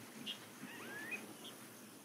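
Faint background ambience with a few short, high chirps and one rising whistle about half a second in, like a small bird's call.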